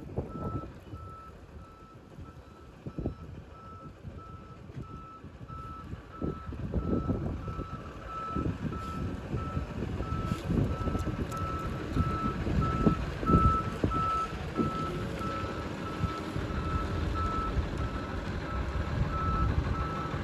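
A truck's reversing alarm beeping at one steady pitch and an even rate as the tractor-trailer backs up. Underneath runs a low rumble that grows louder about six seconds in.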